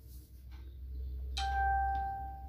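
A single bell-like chime strikes about a second and a half in and rings on for about a second, over a low steady hum.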